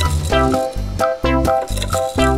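Background music with a bass line and short melody notes at a steady pace.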